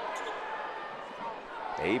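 Low arena crowd murmur with a basketball being dribbled on a hardwood court.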